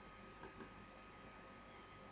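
A computer mouse button clicked, two faint quick clicks about half a second in, over near-silent room tone with a thin steady high tone beneath.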